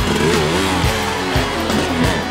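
Background music with a beat, laid over the footage.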